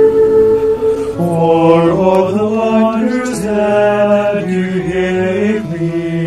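Choir singing in harmony: a long held chord gives way about a second in to a new phrase led by men's voices.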